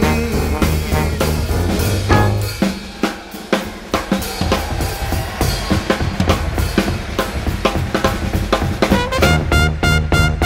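Drum kit break in a New Orleans jazz band number: snare, rimshots and bass drum. The bass line drops out about two and a half seconds in, leaving mostly drums, and the horns come back in near the end.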